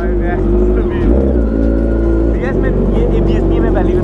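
Sport motorcycle engine running steadily at low revs as the bike rolls slowly away.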